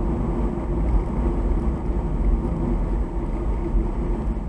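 Steady road and engine noise inside a moving car's cabin, a continuous low rumble.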